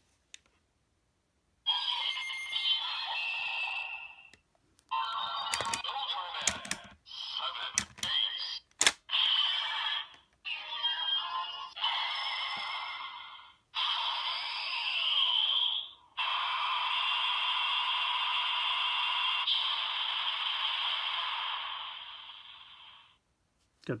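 Bandai DX Ultraman Z roleplay toy playing its electronic sound sequence through its small speaker: several bursts of recorded voice calls, music and sound effects, with a few sharp clicks around the middle. It ends in a long, steady attack effect lasting about seven seconds that fades out.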